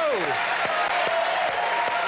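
Studio audience applauding, with some voices cheering, just after a live guitar number ends.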